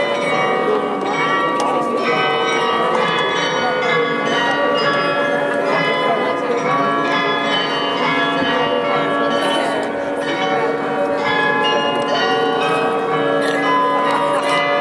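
The Munich New Town Hall Glockenspiel, a set of 43 tuned bells, playing a tune during its hourly figure show, with many struck notes ringing on and overlapping each other.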